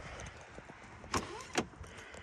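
Two sharp clicks about half a second apart, a car door's handle and latch being worked on a Ford C-Max.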